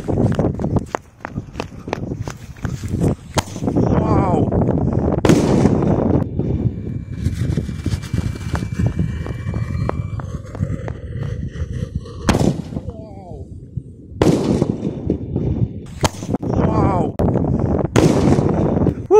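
A Komet Thunder firework tube going off: a long run of sharp bangs and crackles, with several whistling glides in pitch, as it fires shots that burst in the air.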